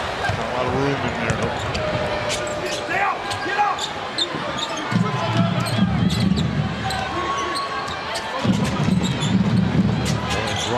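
Live basketball game sound on a hardwood court: a ball dribbling, sneakers squeaking and arena crowd noise. The crowd grows louder and deeper about five seconds in and again near the end.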